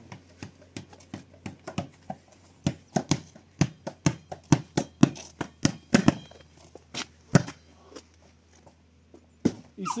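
Footsteps on a dirt path, about two to three steps a second, loudest in the middle and thinning out near the end.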